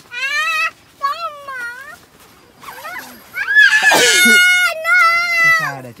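A young child's high-pitched, wordless squeals: several drawn-out calls that bend up and down in pitch, the loudest and harshest about four seconds in.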